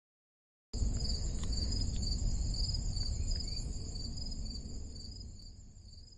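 Insects chirping, like crickets: a high, steady chirping with an even pulse over a low rumble, starting abruptly about a second in and fading out near the end.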